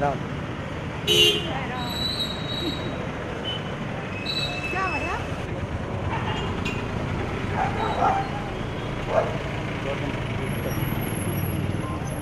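Street traffic: engines of passing cars, motorcycles and auto-rickshaws, with a few short horn beeps and voices in the background; the loudest moment is about a second in.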